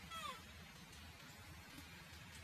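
Baby monkey giving one short cry that falls in pitch, just after the start, faint over the background.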